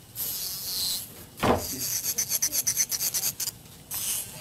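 Hand nail file rubbing across a dip-powder nail, first lightly, then in quick back-and-forth strokes, about seven a second. A single louder knock comes about one and a half seconds in.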